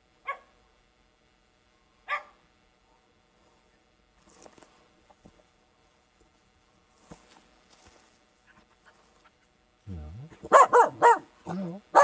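Finnish Spitz barking: two single barks about two seconds apart, then faint rustling of footsteps through undergrowth. About ten seconds in comes a rapid, loud run of barks. This is a false bark aimed at the handler, with no bird found or treed.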